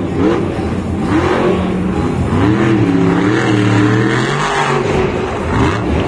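Stone Crusher monster truck's supercharged V8 revving hard in repeated bursts of throttle, its pitch rising and falling. The revs are held high for about two seconds midway, then drop off.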